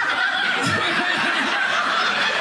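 Audience bursting into sustained laughter that starts suddenly and holds steady.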